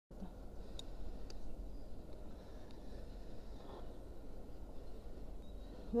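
Faint open-air ambience: a steady low rumble with a few light clicks, once just under a second in, again soon after, and near three seconds.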